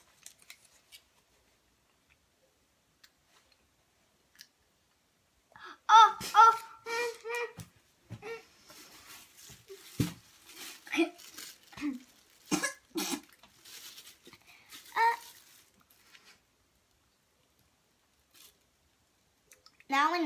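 Quiet for the first few seconds, then a young girl's high, wordless cries about six seconds in, followed by a run of coughs and gagging sounds as she spits out a mouthful of chocolate-covered boiled egg yolk.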